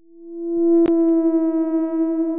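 A single steady electronic tone, a held synth note at one pitch, swelling in over the first second and then sustained, with one sharp click about a second in.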